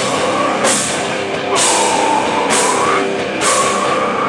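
Hardcore metal band playing live: distorted electric guitar over a drum kit, with a cymbal crash about once a second.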